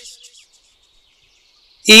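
A pause in a man's speech: his voice trails off at the start, then there is near silence for about a second and a half before he starts speaking again near the end.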